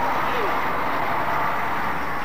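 Outdoor street noise: a steady rush of traffic and crowd that swells and then eases, with a man's voice calling out briefly about half a second in.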